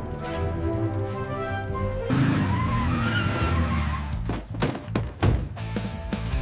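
Background music, with a cartoon monster truck's engine revving and its tires skidding to a stop from about two seconds in, followed by a few sharp hits.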